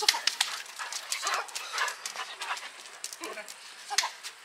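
A dog close by, making a string of short, sharp sounds, with people talking faintly behind it.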